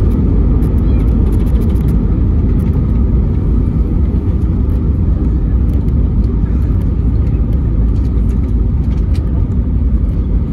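Cabin noise of an Airbus A320neo rolling out on the runway after touchdown, ground spoilers raised: a loud, steady low rumble from the wheels and engines.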